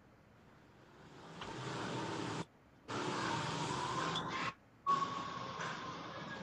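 Steady rushing background noise that fades in about a second in. It cuts out abruptly twice for a fraction of a second, as an online call's noise gate opens and closes.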